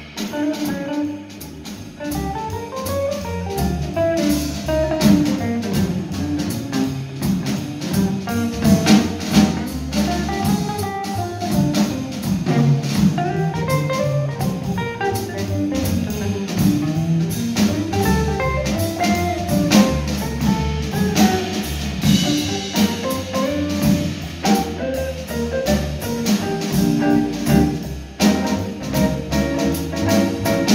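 Live jazz: an amplified hollow-body archtop electric guitar plays a solo line of running single notes over upright bass and a drum kit with cymbals.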